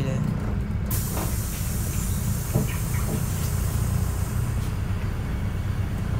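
City bus heard from inside: a steady low engine and road rumble, with a sudden loud hiss starting about a second in and running on, slowly easing off.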